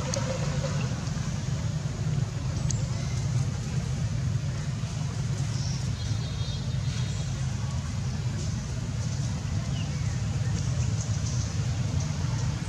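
Steady low outdoor rumble, unchanging throughout, with a few faint ticks above it.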